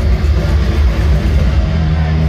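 Loud live rock music from a band playing in an arena, recorded on a phone microphone, with heavy bass dominating the sound.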